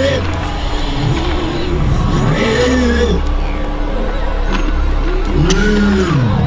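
A passage of a dark, heavy song: a deep, steady bass drone under a pitched wailing sound that swoops up and falls back twice, about three seconds apart.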